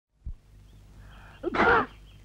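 A person's short, loud vocal burst about one and a half seconds in, after a low thump near the start.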